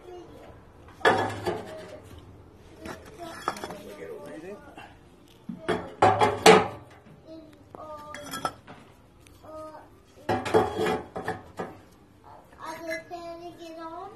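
Refractory firebricks being set into the steel firebox of a wood-fired oven, knocking and scraping against the steel: a series of sharp clinks and knocks, loudest about six seconds in.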